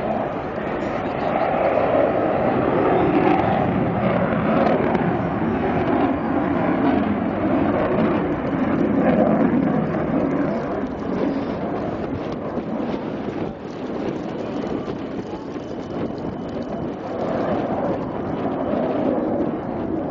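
Jet noise from a MiG-29 fighter's twin turbofan engines as it flies its display at a distance: a steady rush that is loudest in the first half, dips about two-thirds of the way through, and swells again near the end.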